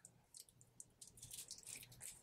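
Near silence, with a few faint light clicks and rustles from fingers handling a stainless steel watch and its bracelet.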